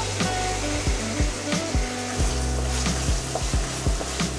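Chili paste sizzling steadily in hot oil in a wok, over background music with a regular beat.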